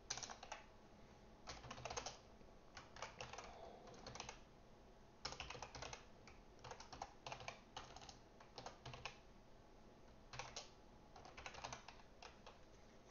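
Faint computer keyboard typing in short bursts of keystrokes separated by pauses.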